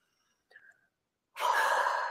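A woman's long, heavy sigh, breathed out through hands cupped over her nose and mouth; it starts about one and a half seconds in and trails off. A faint short breath comes just before it.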